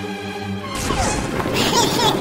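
A loud, rough vocal roar breaks in under a second in and runs on over steady background music.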